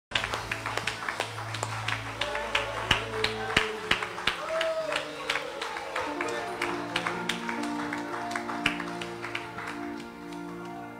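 Live church worship band playing: frequent drum-kit hits over held keyboard chords that change through the passage.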